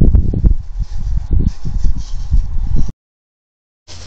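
Wind buffeting the Reolink Argus Eco Ultra security camera's built-in microphone: a loud, irregular low rumble with sharp crackles. It cuts off abruptly about three seconds in.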